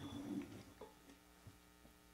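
Faint light clicks of a small glass tasting cup being handled and set on a tabletop: one clearer clink with a short ring just under a second in, then two softer ticks.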